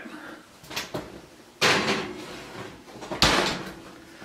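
Kitchen oven door opened with a sudden clack about a second and a half in, then shut with a sharp thud about a second and a half later, as a baking pan goes in.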